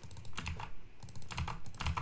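Typing on a computer keyboard: quick runs of key clicks, with a short pause about halfway through.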